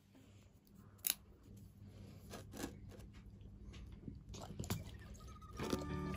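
A dog eating boiled pork liver: quiet, irregular wet chewing clicks and smacks, the sharpest about a second in.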